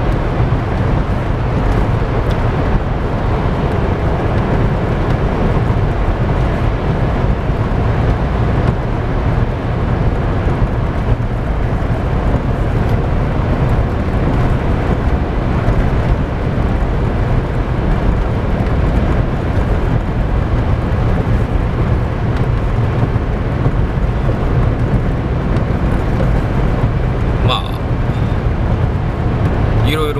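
Steady engine and tyre noise heard from inside the cabin of a Daihatsu Copen driving at a constant pace through a road tunnel, a deep even rumble that holds level throughout.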